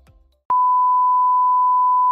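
Background music fading out, then about half a second in a loud electronic beep starts abruptly: one steady, pure, high tone held without change.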